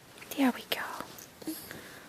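A person speaking softly in a whisper, a brief word or two about half a second in, then quieter breathy sounds.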